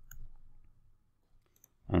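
A few sparse, faint clicks from computer keyboard and mouse use while editing a form on screen.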